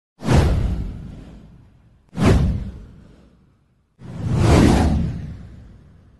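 Three whoosh sound effects of an animated title intro, one about every two seconds. The first two hit suddenly and fade away over about a second and a half; the third swells up more slowly before fading.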